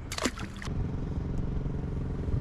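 A boat motor running with a steady hum that grows louder after the first half second, with a brief voice sound at the start.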